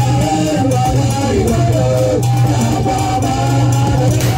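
Live Adowa dance music: drumming under a wavering melodic line and a steady low drone, playing continuously.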